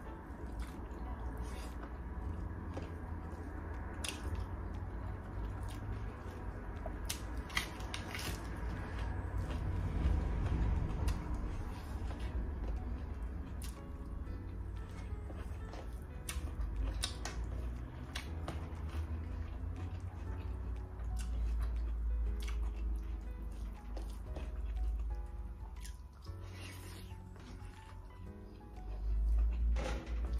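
A person chewing a mouthful of rice and curry, with wet mouth sounds and small clicks from the lips, over soft background music.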